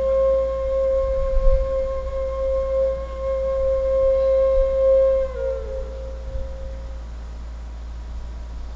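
A flute holding one long steady note that dips a little in pitch about five seconds in and fades out soon after. A low thud about one and a half seconds in, over a steady low hum.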